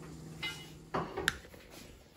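A few light clicks and knocks, the sharpest a little over a second in, over a steady low hum that fades out about a second in.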